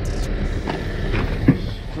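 A truck's diesel engine idling as a steady low rumble, with a few light clicks and one sharp knock about one and a half seconds in as a car door is opened.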